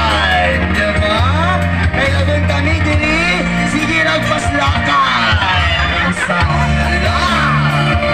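A woman singing into a microphone over amplified backing music with a steady bass line, the sung line gliding and wavering in pitch.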